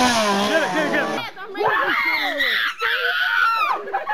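Frightened people screaming and shrieking, with high-pitched, drawn-out cries in the second half and excited voices around them.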